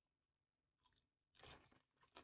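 Faint chewing of food, with a few soft crunches about a second in and a longer patch of crunching near the end.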